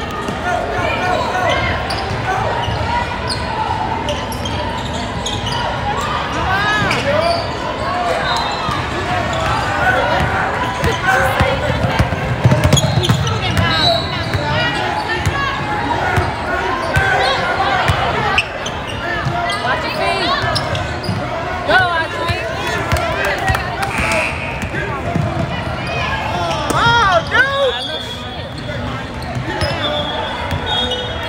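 Indoor gym sound during a basketball game: a basketball bouncing on the hardwood court, under continual spectators' chatter and calls from around the court.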